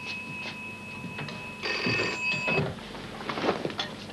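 Telephone ringing with a steady high electronic tone that gets louder and then cuts off suddenly about two and a half seconds in, followed by a few short knocks and rustles.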